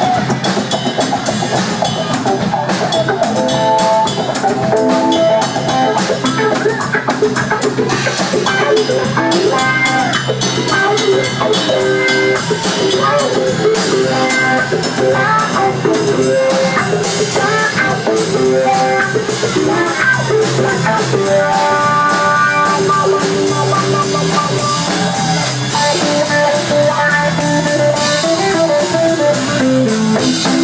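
Live instrumental funk jam by a rock band: a drum kit with busy cymbal and snare strokes under electric bass and electric guitar riffs.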